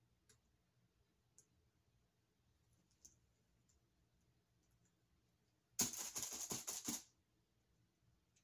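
Mostly quiet with a few faint clicks; about six seconds in comes a loud crackling rustle lasting about a second, like plastic being handled.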